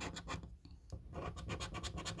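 A coin scratching the latex coating off a paper lottery scratch card in quick back-and-forth strokes, about ten a second, with a brief pause near the middle.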